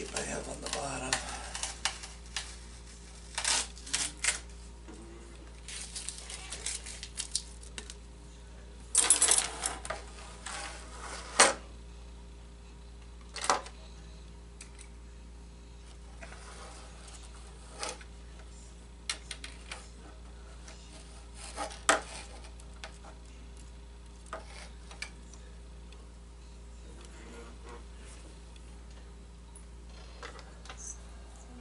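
Irregular clicks, taps and clatter of small tools and model-airplane parts being handled on a wooden workbench while wire landing gear is fitted, with a louder burst of clatter about nine to twelve seconds in. A steady low electrical hum runs underneath.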